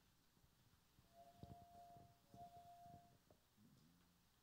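Near silence: faint room tone, with a soft steady tone held for about two seconds and a few soft knocks.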